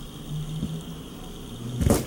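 A wavy crinkle-cutter blade pushed down through a block of candle wax. Near the end comes a short, loud crunching thud as the blade breaks through and a piece of the wax crumbles off.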